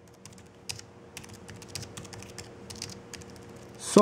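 Typing on a Belkin Bluetooth keyboard case made for the iPad Mini: quick, irregular key clicks. A faint steady hum lies underneath.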